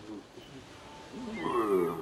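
A voice making a drawn-out growling vocal effect that bends in pitch and grows louder toward the end.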